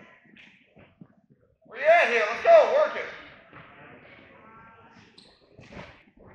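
A man's voice shouting from the mat side: a loud, drawn-out yell with rising and falling pitch that starts about two seconds in and lasts about a second, followed by fainter calls. A few soft thuds come before it.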